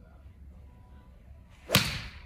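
Pitching wedge striking a golf ball off an artificial-turf hitting mat: one sharp crack near the end, with a short echo after it.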